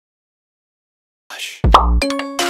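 Silence, then about a second in a short whoosh that fades. Near the end a deep bass hit with a quick pitch sweep opens an outro music jingle.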